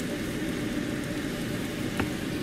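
French toast frying in a buttered nonstick pan, giving a steady sizzling hiss, with a light click near the end.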